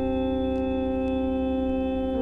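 Electronic music: a held chord of several steady organ-like tones over a low fluttering hum, not changing.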